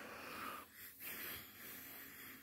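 A Newfoundland dog breathing quietly, two long breaths about a second apart.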